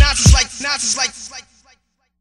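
Hip hop beat with heavy kick drums and short vocal snippets cut and scratched on a turntable, repeating quickly. The track ends about a second and a half in, with a brief fading tail and then silence.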